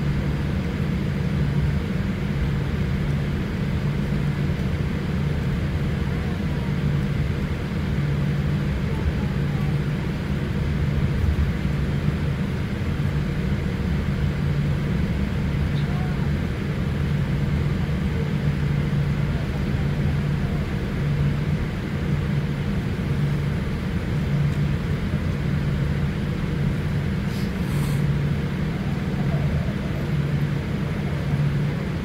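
Cabin noise of a twin-engine jet airliner taxiing with its engines at idle: a steady low rumble with a hum that swells and fades every second or so.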